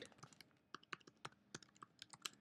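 Faint, irregular tapping of computer keyboard keys: a password being typed into a Mac unlock prompt.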